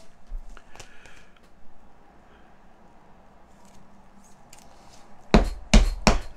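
Trading cards and rigid plastic card holders handled on a tabletop: a few faint light clicks, then two knocks about half a second apart near the end.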